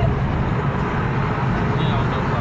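Steady road and engine rumble heard inside a car's cabin while it is driving.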